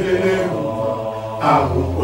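Male voices chanting a ritual chant in drawn-out phrases, with a new phrase swelling up near the end, over a low steady drone.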